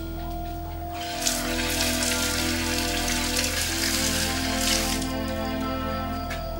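Water running from a wall tap and splashing as hands and face are washed under it, starting about a second in and stopping near the end. Soft background music of slow held notes plays throughout.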